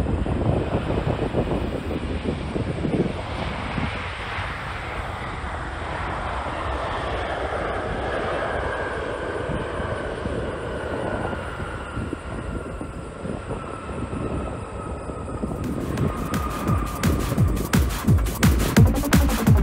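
Boeing 747 freighter's jet engines as it rolls down the runway: a steady rush with a whine that slowly falls in pitch as it goes by, and wind buffeting the microphone at the start. Electronic music with a beat comes in near the end.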